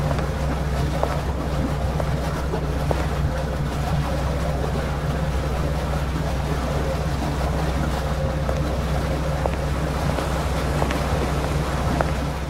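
Steady low rumble and hum of a large docked cruise ship's machinery, unchanging throughout, with a light airy hiss over it.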